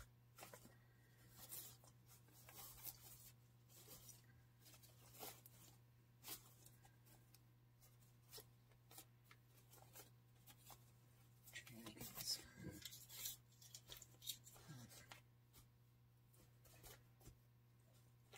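Faint rustling and crinkling of wired ribbon loops handled and fluffed by hand, as scattered soft crackles, a little busier about twelve seconds in, over a steady low hum.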